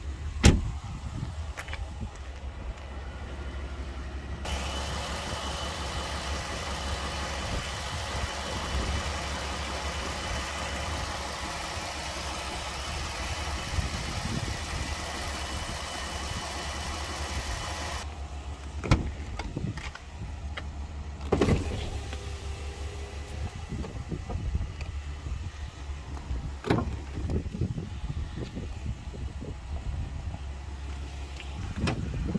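Ram 1500 pickup's 3.6-litre V6 idling, with a sharp clack about half a second in. From about 4 to 18 s the engine is heard louder and fuller, with steady whining tones from the open engine bay. Two thumps follow around 19 and 21 seconds, then lighter knocks.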